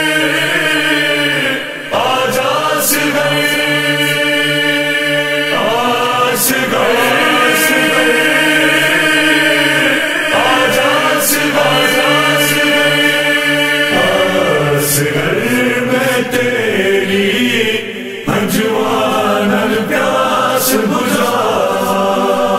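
A vocal chorus chanting a Shia noha (mourning lament) in long, held sung phrases, with brief pauses between lines.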